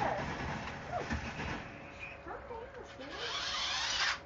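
Small electric RC toy car's motor whirring as it drives across carpet, growing louder over the last second as it nears the camera.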